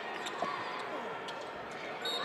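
Quiet basketball arena ambience: a low crowd murmur and court noise, with one faint knock about half a second in.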